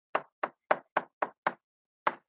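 Chalk striking a blackboard while a formula is written: six short, sharp taps, about four a second.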